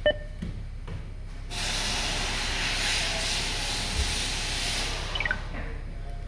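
2020 Honda Accord's audio system answering its steering-wheel controls: a short electronic beep, then about three and a half seconds of steady hiss from the speakers, like radio static, ending with a quick run of falling beeps.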